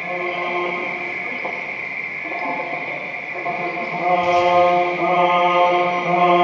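Electronic drone music played through loudspeakers: several sustained tones held together like a chord, with a chant-like quality. It dips a little in the middle and swells back about four seconds in, with a brief hiss at that moment.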